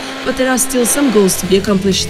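A man speaking in Portuguese over a steady motorcycle engine drone from onboard race footage.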